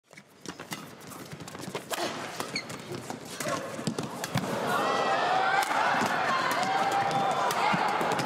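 Badminton rackets striking a shuttlecock in a fast rally: sharp cracks at uneven intervals, about a dozen in all. Shoes squeak on the court, and a crowd grows louder from about halfway through.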